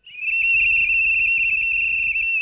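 A hand whistle blown in one long, steady, shrill blast with a slight warble, starting just after the opening moment and still sounding at the end.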